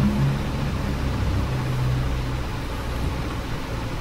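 Steady low hum with an even hiss: room background noise.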